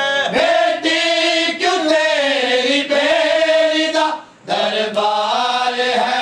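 Unaccompanied male voice chanting a noha, a Shia lament, in long held, wavering notes, with a short break for breath about four seconds in.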